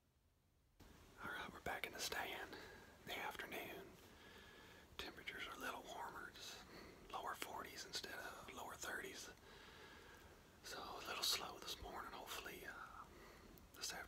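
A man whispering, starting about a second in after a brief near silence.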